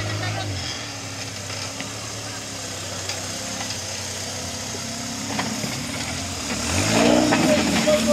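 Engine of a tube-frame 4x4 trial buggy working as it crawls over stacked skip containers, its revs dropping about half a second in, then rising sharply and louder near the end.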